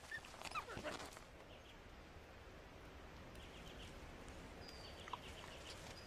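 Eurasian wolves giving a few soft, faint whines in the first second, then a quiet background with a few brief high chirps.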